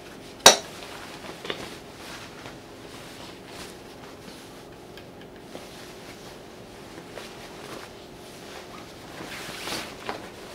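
A sharp clack about half a second in, then faint scattered clicks of handling at an industrial sewing machine over the steady faint hum of its motor; fabric rustles as it is pulled across the machine bed near the end.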